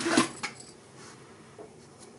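Tail end of a spoken word, then a short click about half a second in as small pliers are set down on a wooden tabletop. Then only faint handling sounds while the wire ornament is held.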